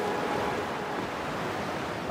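Sea surf breaking and washing over flat shoreline rocks: a steady rushing wash that eases slightly.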